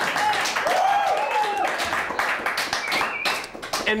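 Studio audience applauding, with a few voices calling out over the clapping. The applause thins out near the end.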